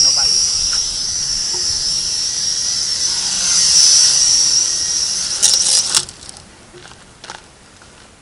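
Toy quadcopter's small motors and propellers whining high and wavering, rising in pitch about halfway through. A few clatters follow and the motors cut off suddenly about six seconds in, as the drone tips over in the wind and the throttle is cut.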